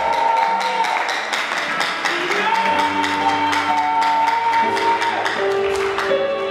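Live worship band music: long held keyboard chords that change a couple of times, over a steady ticking beat, with the congregation cheering and clapping underneath.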